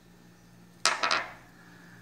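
A broken piece of rock set down on a hard stone countertop: three quick clacks of stone on stone in under half a second, about a second in.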